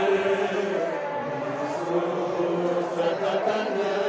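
A group of men chanting a Balti noha, a Shia mourning lament, together in a steady, continuous chant.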